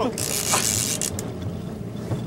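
A short laugh, then the houseboat's motor running steadily under a hiss of wind and water. The hiss is brightest for about the first second and then eases.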